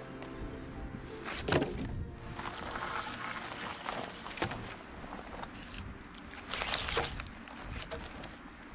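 Soft background music fading out in the first second or so, then dry dead larch wood being handled and dropped onto a log pile: a few sharp wooden knocks, the loudest about one and a half seconds in, others near the middle and toward the end, with rustling between them.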